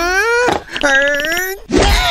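A cartoon man's voice wailing in long drawn-out cries, each rising in pitch, with a short break between them and another cry starting near the end.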